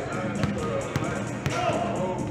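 Basketballs bouncing on a court floor, sharp thuds about every half second, with people talking in the background.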